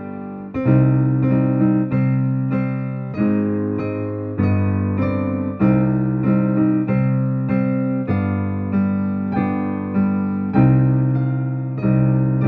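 Digital piano played at a slow tempo: evenly spaced melody notes, about two a second, over sustained low bass notes, each note dying away after it is struck.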